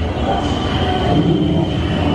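Loud, steady low rumbling with a faint high tone held above it.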